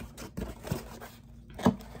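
Cardboard box being handled and raised into place, giving a few short knocks and rustles, the loudest knock near the end.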